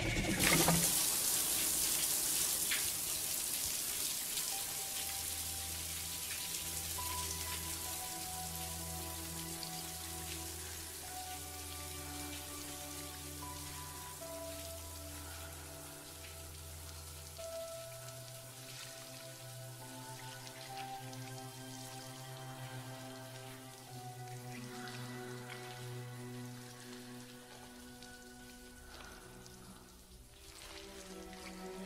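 Shower spray hissing, loudest at first and slowly dying down. From a few seconds in, a slow film score of long held chords plays over it.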